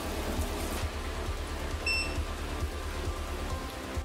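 Water sloshing and trickling in a fish holding tub, a steady wash of noise over a low, regular throb. A single short electronic beep sounds about halfway through.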